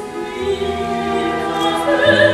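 Orchestral operetta accompaniment playing long held chords, with a bass line entering about half a second in.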